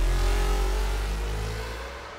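Engine noise with a slowly rising pitch, gradually fading away.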